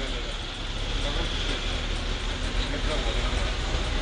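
Steady urban outdoor noise of road traffic, with a strong low rumble and no distinct events.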